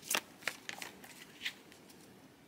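A deck of large picture cards being shuffled and leafed through in the hands: about half a dozen short card snaps and rustles, the loudest near the start and about a second and a half in.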